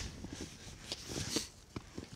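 Quiet background with a few faint, soft taps and rustles, several of them in the second half.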